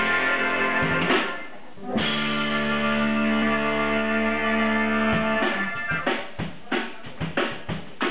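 Live rock band with electric guitar and drum kit. The band holds a long chord that fades out, strikes a fresh chord about two seconds in and holds it, then the drum kit comes in with a rapid run of hits about five and a half seconds in.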